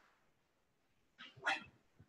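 Near silence: room tone, broken by one short faint sound about one and a half seconds in.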